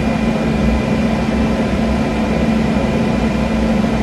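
A machine running steadily, a constant hum with a low drone and a faint high whine.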